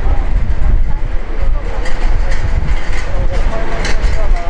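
City street noise: a loud, steady low rumble with faint voices and a few clicks.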